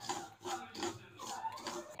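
Metal spoon stirring and scraping small black seeds around a dry aluminium pan, as they are roasted over a medium flame: a few irregular rasping strokes.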